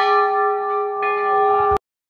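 Large hanging brass temple bell (ghanta) ringing on after a single strike: a steady tone with several overtones, fading slowly, then cutting off suddenly near the end.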